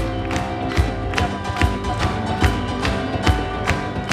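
Live band music in a short instrumental passage between sung lines: sustained keyboard chords over a steady beat of about two and a half strikes a second.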